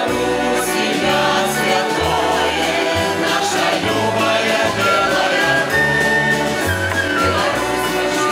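Mixed choir of men and women singing a Belarusian folk song in harmony, over instrumental accompaniment with low bass notes that change about once a second.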